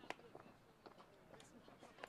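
A wooden shinty caman striking the ball once: a single sharp crack just after the start, over faint distant voices.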